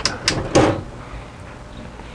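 A few short knocks and clicks within the first second, like handling against the plywood enclosure, then a low steady hum.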